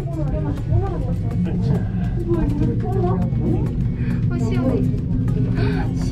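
Background music and chatter from several voices over a steady low rumble inside a moving cable car cabin.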